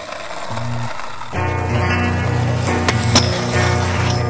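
Skateboard wheels rolling on concrete. About a second and a half in, music with a steady bass line starts, with two sharp clacks a little before the end.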